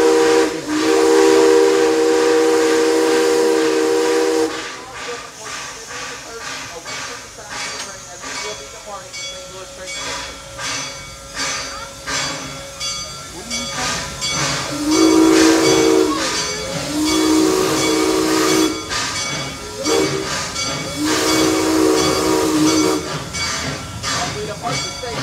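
Propane-fired steam locomotive sounding its chime whistle in two long blasts, then chuffing and hissing steam as it gets under way. Near the end it whistles again in a long, long, short, long pattern, the standard warning signal for a grade crossing.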